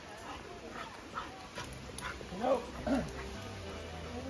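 A small dog giving two short yelps, about half a second apart, a little past the middle.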